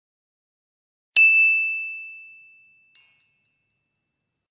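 Two chime sound effects. A single clear ding comes about a second in and fades slowly over nearly two seconds; a brighter, higher tinkling chime follows near the end and dies away quickly.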